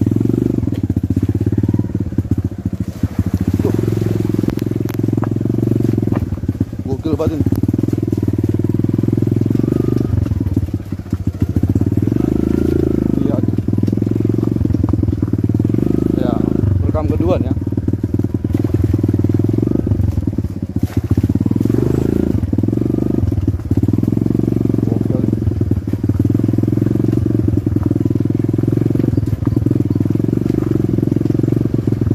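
A close engine running steadily at low revs, with a fast even pulse, as a small vehicle moves slowly over a rough, potholed dirt track.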